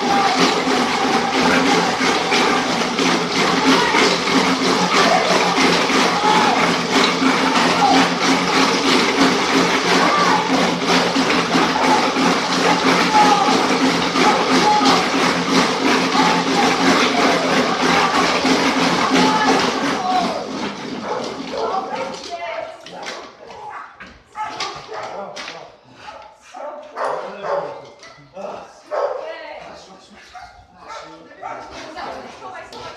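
Wooden slat treadmill running fast under a sprinting dog, a dense steady rolling noise of slats over rollers mixed with dog whining and crowd voices. It stops suddenly about two-thirds of the way through, leaving knocks, dog yips and voices.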